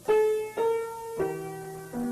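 Solo piano playing the song's slow, gentle intro melody. A new note or chord is struck about every half second, each ringing on and fading before the next.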